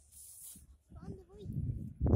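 Faint voice over a low rumble, with a short hiss at the start.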